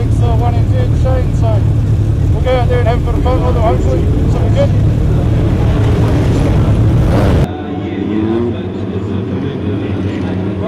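Minisprint engine running steadily close by, with voices over it in the first few seconds. About seven and a half seconds in, the sound cuts to a quieter field of minisprint engines, one briefly revving up.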